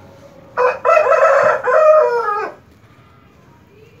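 A rooster crowing once, a call of about two seconds that starts about half a second in and drops in pitch at the end.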